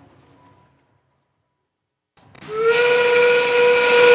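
FRC field's endgame warning: a train-whistle sound effect over the arena speakers, marking 30 seconds left in the match. It is one steady held whistle tone that starts about two seconds in, after a moment of near silence.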